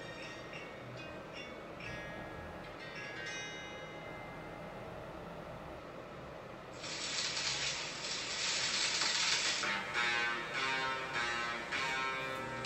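Background music, quiet at first; about seven seconds in it swells louder with a bright hissing wash over the notes.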